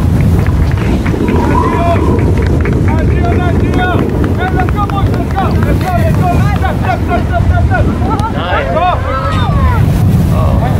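Wind buffeting the microphone, under many overlapping excited shouts and cheers from players and spectators after a goal. The voices grow busier about halfway through.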